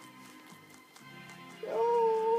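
Television soundtrack with music playing in the background; about one and a half seconds in, a loud, steady, high whine begins and is held.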